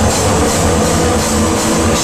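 Loud live heavy rock band playing: a dense, steady wall of distorted sound over drums and cymbals.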